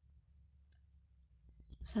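Faint, scattered clicks of a size 5.0 crochet hook working milk cotton yarn as a double crochet stitch is made, over a low steady hum. A voice starts speaking near the end.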